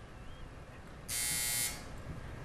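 Electronic quiz-show buzzer sounding once, about a second in, a harsh half-second tone rich in overtones: the signal that time has run out on the question.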